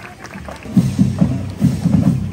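Marching band music starting about two-thirds of a second in, led by short, punchy low bass notes in a rhythm.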